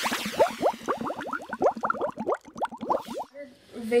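Water bubbling: a fast run of short, rising gurgling pops, several a second, that stops suddenly about three seconds in.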